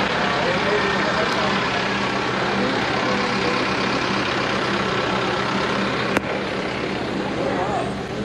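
Minibus engine idling steadily, a low even hum, with people chattering over it and a single click about six seconds in.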